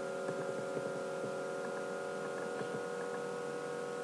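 Steady electrical hum made of several constant tones, over a faint even hiss.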